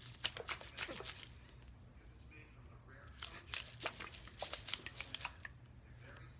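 Small plastic containers being shaken and handled: quick, irregular clicks and crinkles in two spells, one at the start and another from about three seconds in, with a quieter gap between.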